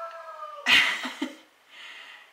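A household pet whining in a high, thin, slightly falling tone, then a short loud cry about two-thirds of a second in.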